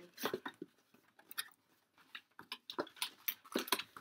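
A cardboard camcorder box and its paper inserts being handled: quiet, scattered taps and rustles.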